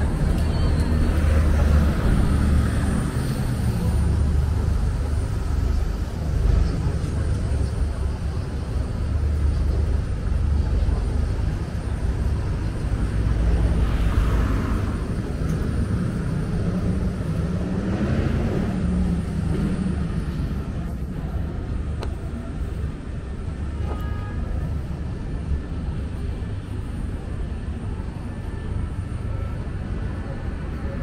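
Steady low engine rumble from a tour boat passing on the river, mixed with road traffic.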